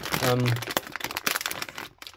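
Haribo Merry Mix plastic share bag crinkling and rustling as a hand rummages inside it and pulls out a jelly sweet: a dense run of small crackles lasting most of the two seconds.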